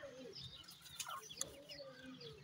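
Francolin hen giving soft low clucks while her chicks keep up short high peeps, with a couple of faint ticks near the middle.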